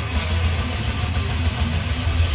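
Death metal band playing live: heavily distorted electric guitars, bass and drum kit in a dense, loud wall of sound, with cymbals coming in at the start.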